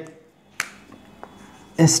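A single sharp click about half a second in, then a fainter tick, from a whiteboard marker being handled as writing begins; speech resumes near the end.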